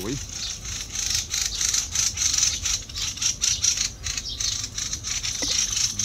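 Outdoor ambience by a pond: a steady high-pitched rasping hiss with fast pulses, over a low rumble of wind on the microphone.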